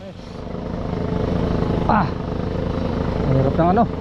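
A small engine running steadily, its sound fading up over the first second or so, with a person's brief calls over it near the middle and near the end.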